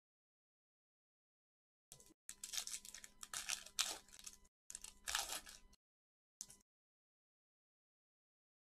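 Foil wrapper of a trading-card pack being torn open and crinkled. It is crackly, starting about two seconds in and going on for a few seconds, with one last short crinkle near the end.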